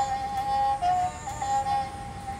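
A sarinda-type bowed folk fiddle played with a long bow, mostly holding one sustained high note, with a brief dip to a lower note about a second in before returning.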